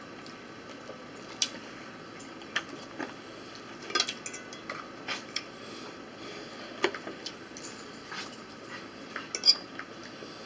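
Metal fork tapping and scraping in a plastic takeout tray: scattered sharp clicks, the loudest about a second and a half in and again near the end.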